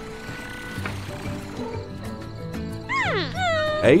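Soft cartoon background music, then about three seconds in a loud, high cry that slides steeply down in pitch, followed by a quick run of shorter falling squeals, like a cat's yowl.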